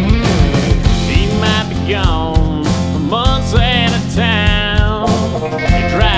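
Country band music: drums keep a steady beat under guitars, with a lead line of bending, sliding notes over it.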